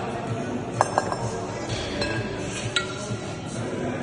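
Metallic clinks of two 14 kg kettlebells knocking together in the rack position: a quick double clink about a second in and a single one near three seconds. Background music with a steady beat runs underneath.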